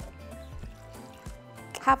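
Water poured from a glass measuring cup into a blender jar, under background music with a steady beat.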